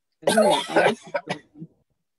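A person's loud burst of voice, about a second long, followed by three short bursts: a cough or a laugh into a webcam microphone.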